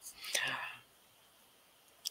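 A short, faint whispered voice sound lasting about half a second near the start.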